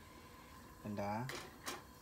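A man's voice says a short phrase about a second in, with two sharp clicks right after it, about a third of a second apart.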